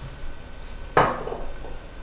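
A bottle set down on a granite countertop: one sharp knock about a second in, with a brief ringing tail.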